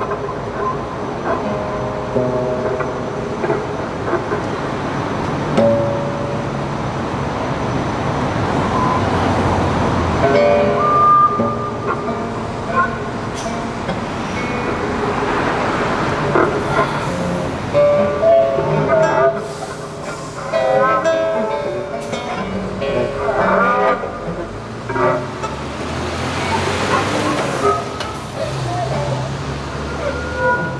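Free improvisation for violin, cello and two acoustic guitars: scattered plucked and bowed notes and held tones, with street traffic swelling and fading behind the music several times as cars pass.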